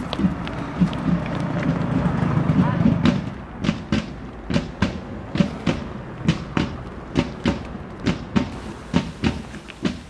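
Footsteps of two people walking at an easy pace on a paved path, about two to three steps a second. For the first three seconds a louder background noise with a low hum swells under the steps, then cuts off suddenly about three seconds in.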